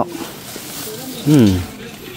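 Speech only: a voice finishes a word at the start, and about a second in gives a short falling 'uh'.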